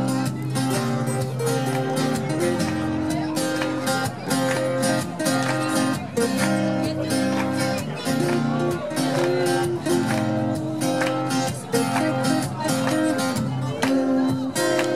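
Two acoustic guitars played live, strummed and picked in a steady rhythm, with a man singing over them at the microphone.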